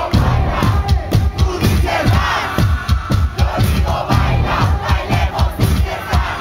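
Loud live electronic dance music with a steady fast bass-drum beat, and a crowd shouting along with the vocalist.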